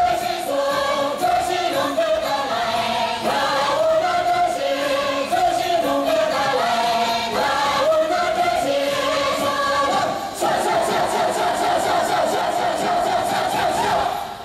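A group of voices singing a folk melody together over a steady beat, closing on one long held chord for the last three or four seconds.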